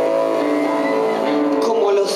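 Live synth music: sustained keyboard-synthesizer drones holding several steady notes, with a woman's singing voice coming in near the end.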